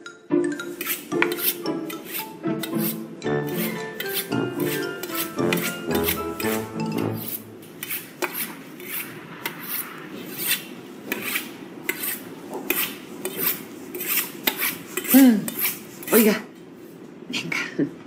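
Repeated metallic scraping strokes, about two a second: a butcher's knife being drawn along a sharpening steel. A short stretch of music plays under the first several seconds.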